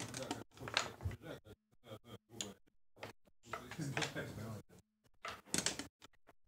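Low, untranscribed talk, then near the end a quick rattle of clicks as backgammon dice are thrown onto the board.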